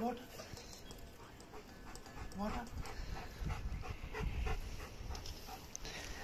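German shepherd panting close by, a soft, irregular breathing.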